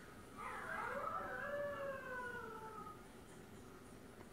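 A young German Shepherd howling, husky-style: one long call that starts about half a second in, rises in pitch, then slowly falls and fades out about three seconds in.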